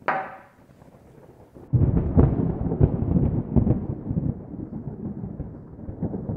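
A thunder-like rumble sound effect: a sudden loud onset about two seconds in, then a deep, uneven rumble that slowly fades.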